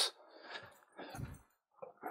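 A few faint, soft shuffling sounds of someone walking on carpet and moving a handheld camera, about half a second apart to a second apart.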